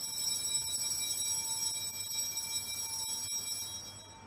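Altar bells (Sanctus bells) ringing, high and bright, marking the elevation of the chalice at the consecration. The ringing holds steady for about four seconds, then stops just before the end.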